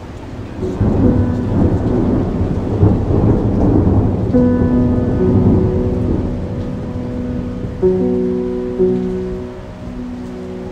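Thunder rumbling with rain, swelling in about half a second in and easing off after a few seconds, under held chords from a Behringer DeepMind 12 synthesizer and a Steinway piano that change twice.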